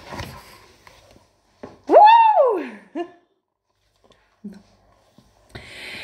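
A person's voice: one long wordless call about two seconds in that glides up and falls back, then a short vocal sound, with a brief rustle of movement at the start.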